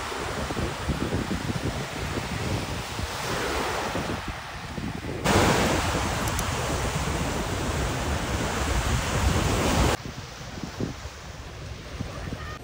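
Small waves breaking and washing up over a sandy beach, with wind on the microphone. The sound jumps suddenly louder about five seconds in and drops back quieter about two seconds before the end.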